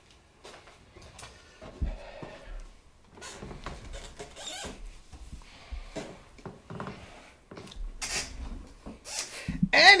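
Quiet irregular rustling and rubbing noises with a few soft knocks in a small room, and no trumpet playing; a man's voice starts right at the end.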